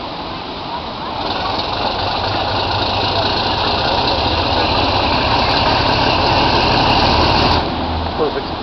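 A diesel locomotive's engine working under power as it approaches, growing steadily louder, then dropping back suddenly near the end.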